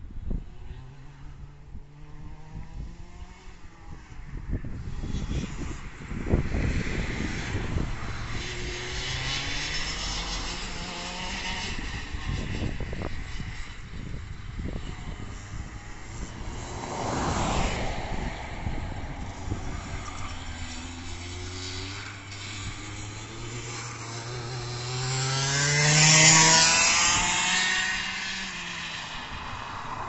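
Tony Kart's Vortex ROK 125cc two-stroke engine lapping the track, its pitch climbing and dropping again and again as the kart accelerates and lifts for corners. It grows loudest near the end as it accelerates past close by.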